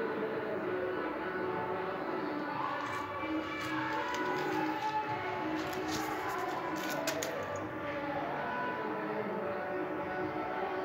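Background music with a sustained, gliding melodic line.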